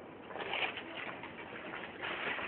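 Pigeon cooing over a steady background hiss.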